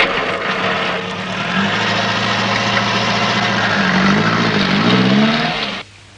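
Tata lorry's diesel engine running, its pitch stepping up about a second and a half in and wavering near the end as it is revved, then cutting off suddenly.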